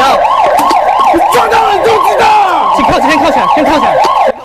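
Police car siren on a fast yelp, its pitch sweeping rapidly up and down about three times a second, loud and unbroken.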